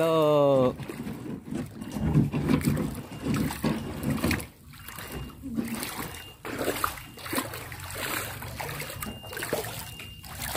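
Floodwater splashing and lapping around a small plastic kayak as it is moved through the water, with irregular knocks and sloshes. A voice calls out briefly at the start.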